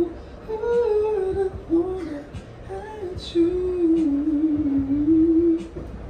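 A man humming and singing a wordless melody into a handheld microphone, in long held notes that slide slowly up and down, with short breaks between phrases.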